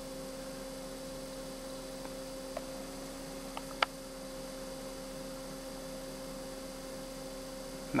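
WAECO roof-mounted compressor parking air conditioner in a truck cab, its fans running with a steady hum while the compressor has not yet started. Two faint clicks come about two and a half and four seconds in.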